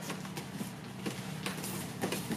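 Bare feet scuffing and stepping on foam gym mats as two grapplers drive through a double-leg takedown: a scatter of faint short scuffs over a steady low hum.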